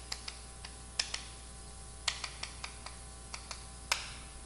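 Chalk tapping and knocking on a blackboard while characters are written: a run of short, irregular clicks, the sharpest about one second, two seconds and nearly four seconds in.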